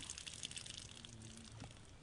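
Faint spatter and drip of water blown out through a LifeStraw personal water filter, clearing the filter of water after use.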